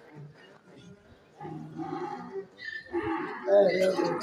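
A man's voice reciting slowly through a handheld microphone in drawn-out phrases. It starts after about a second and a half of quiet and grows louder near the end.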